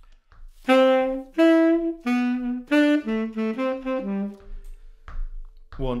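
Tenor saxophone playing a short phrase of detached notes placed on the off-beats (the 'ands'), the first four spaced out and the last few quicker and falling in pitch, ending about four and a half seconds in. A foot tapping the beat is faintly heard beneath.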